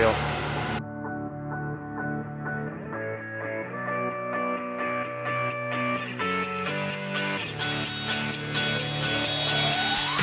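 Background music of held, steady notes that change every second or so, cutting in abruptly under a second in after a voice, with a rising whoosh near the end.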